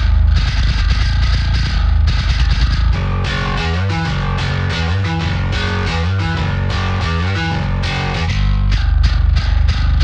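A soloed metal bass guitar track playing. About three seconds in it switches to a reference bass stem with a stereo-widening effect that sounds massive. Near the end it switches back to the first bass track.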